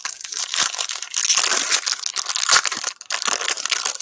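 Foil wrapper of a baseball card pack being torn open and crinkled by hand: a dense, continuous crackling rustle with a brief lull about three seconds in.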